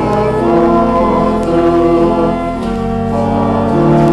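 Choir singing with organ accompaniment in long held chords that change every second or so.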